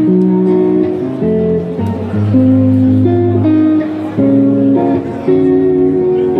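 Live blues band: a Les Paul-style electric guitar and an electric bass playing through stage amplifiers, with loud sustained notes and chords that change about once a second.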